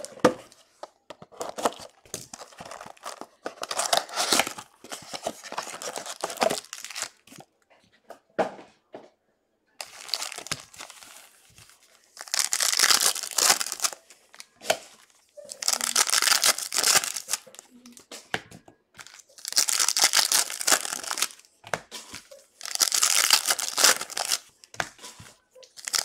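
Foil and plastic trading-card pack wrappers being torn open and crinkled by hand. It starts as lighter rustling, then comes in five louder bursts of tearing and crinkling, each a second or two long, in the second half.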